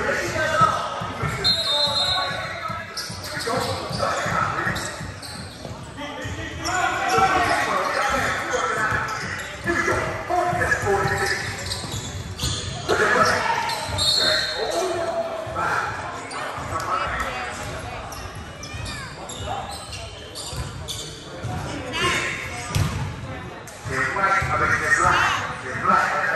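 Basketball bouncing on a hardwood gym court among indistinct voices of players and spectators, echoing in a large hall.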